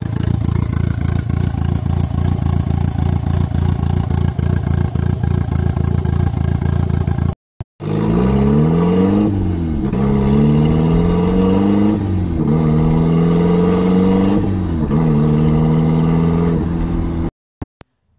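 Turbocharged Mazda Miata four-cylinder, running with its exhaust dumping straight out of the turbo with no downpipe: loud, with rapid exhaust pulses. After a cut partway through, the car pulls away and accelerates through the gears. The engine note climbs and then drops at three shifts before settling.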